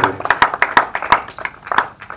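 Hand clapping from a few people close to the microphone: sharp, uneven claps, roughly five or six a second.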